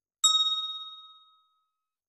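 A single bell ding, struck about a quarter second in and fading away over about a second and a half: the notification-bell sound effect of a subscribe-button animation as the bell icon is clicked.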